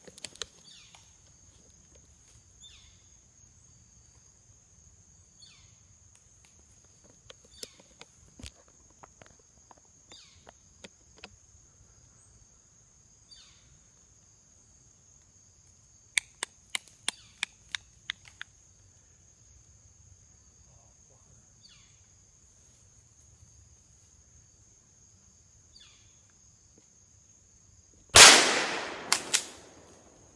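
A single loud shotgun blast from a Browning BPS pump shotgun near the end, ringing away over about a second, with two quick sharp clicks right after it. Before it, a steady high insect drone, short falling calls every few seconds, and a quick run of sharp clicks midway.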